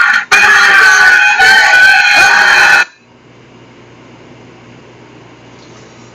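A person screaming: one long, high-pitched shriek lasting about two and a half seconds that cuts off suddenly, followed by a faint steady low hum.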